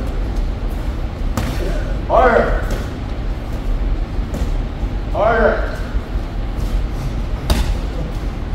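Boxing gloves landing during sparring: a few separate sharp slaps and thuds, the loudest one near the end.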